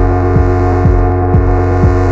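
Electronic techno music: a sustained, droning chord of held synth tones over a steady kick drum that beats about twice a second.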